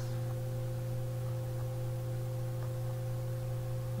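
Steady electrical hum made of a few fixed low tones, unchanging throughout, with no other sound.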